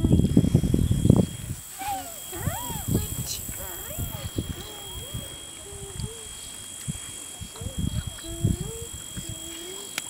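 Quiet, halting speech from men talking, with pauses between phrases. A loud low rumbling noise fills about the first second, and a faint steady high-pitched whine runs from about three seconds in.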